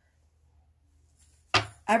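Near silence: room tone for about a second and a half, then a woman starts speaking abruptly near the end.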